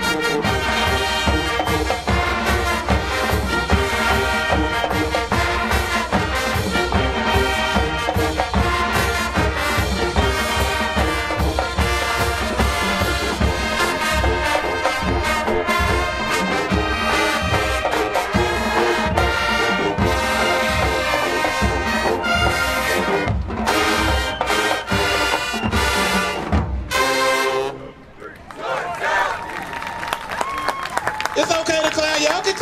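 High school marching band playing: a full brass section with sousaphones over a drumline's steady beat. The music cuts off sharply about three seconds before the end.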